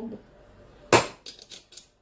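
A stainless steel garlic press being handled: one sharp metallic click about a second in, then a few faint clicks as the press is opened and a garlic clove is set in its hopper.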